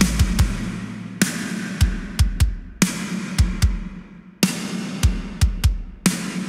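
Soloed drum playback from a metal mix: sharp snare hits, each followed by a plate-reverb tail that rings out and fades, over kick-drum thumps in an uneven pattern. The reverb is squashed by a limiter so that it steps out of the way of the dry snare's attack.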